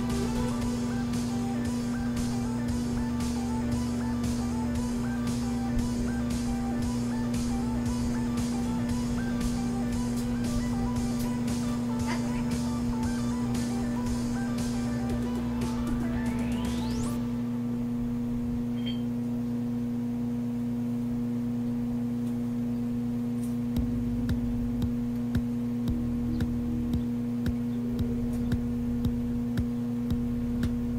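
A microwave oven running with a newly fitted magnetron and its outer cover off, giving a steady hum that sounds normal rather than the loud noise of the faulty magnetron. Background music plays over the hum for the first half and ends with a rising swoosh. From about two-thirds of the way in, the mechanical timer dial ticks about once a second.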